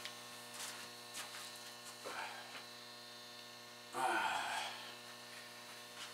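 Steady, faint electrical mains hum, with a few soft knocks and one brief louder noise about four seconds in.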